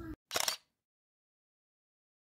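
A single SLR camera shutter release: two quick clacks close together, about a third of a second in.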